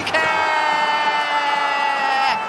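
A football TV commentator's goal call, the scorer's name "Koike!" shouted and held as one long, slightly falling note for about two seconds.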